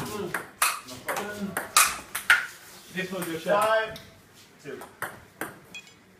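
Table tennis ball being hit back and forth in a rally: a string of sharp clicks from the paddles striking it and its bounces on the table.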